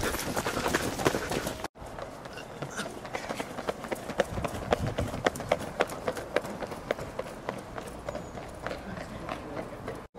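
Footsteps of people running on paved ground: quick, irregular slapping steps, with a brief dropout about two seconds in.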